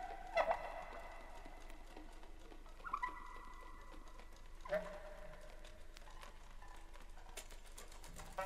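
Sparse, quiet stretch of avant-garde sound-collage tape music: three short pitched calls over faint hiss, the first near the start and the last about five seconds in sliding down in pitch, with a higher tone held for about a second and a half around three seconds in.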